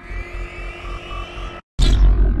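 Electronic logo-intro sound effect: a pulsing bass under a rising whine that cuts off abruptly about one and a half seconds in, then a loud hit launching into sustained electronic tones.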